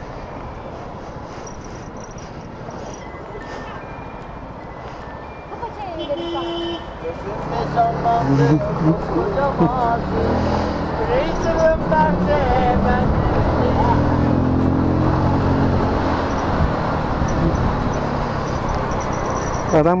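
Steady small-engine and road noise from a Yuki Retro 100 scooter being ridden in traffic, then from about seven seconds in a much louder song: a man's voice singing over music.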